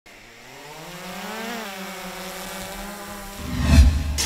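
Quadcopter drone's propellers whirring at a steady pitch that rises slightly in the first second and a half as it is held up for a hand launch. About three and a half seconds in, a loud low boom swells up and peaks just before the end.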